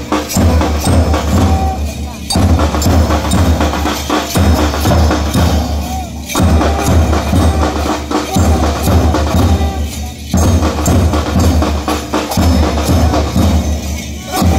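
School marching band's bass drum and other percussion beating a steady march rhythm. The phrase repeats about every four seconds with a brief break between.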